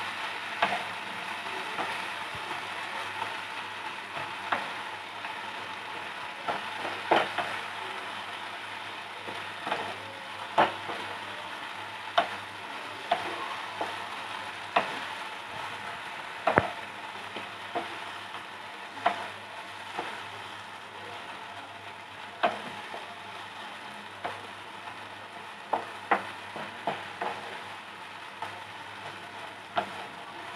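Minced soya chunks frying in a non-stick kadai with a steady sizzle, while a spatula stirs and scrapes them, knocking sharply against the pan at irregular moments every second or two.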